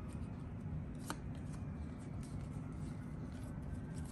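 Baseball trading cards from a freshly opened hobby pack being thumbed through by hand: faint soft slides and ticks of card stock, with one sharper click about a second in.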